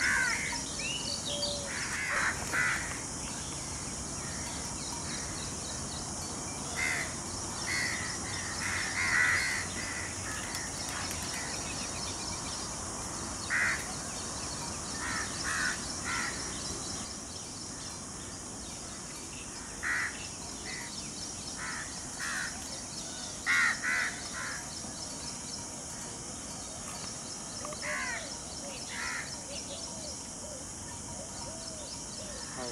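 Birds calling in short calls, often two or three in quick succession, every few seconds over a steady high hiss of outdoor ambience.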